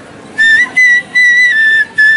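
Side-blown bamboo flute played solo: four high, clear held notes with short breaks between them, starting about half a second in, the last note a little lower than the others.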